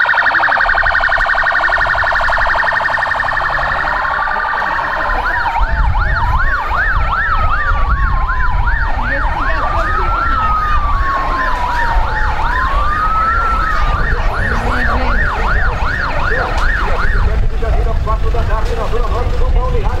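Sirens of police and fire-rescue vehicles passing slowly: first a fast electronic warble, then a yelp cycling about twice a second with a slower wail rising and falling every few seconds over it. The sirens stop a few seconds before the end, leaving engine rumble.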